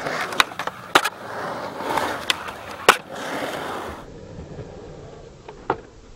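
Skateboard wheels rolling on concrete, with several sharp clacks of the board in the first three seconds. After about four seconds the rolling is quieter, with one more clack near the end.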